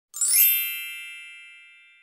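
A magical chime sound effect. It opens with a bright, high shimmering tinkle, then settles into a single ringing chime that fades out over about two seconds.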